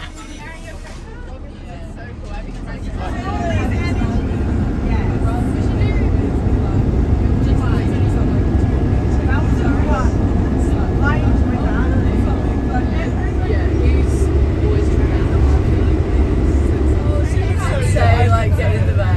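Steady low rumble of a bus travelling along a highway, heard from inside the cabin, growing louder about three seconds in, with passengers chattering faintly over it.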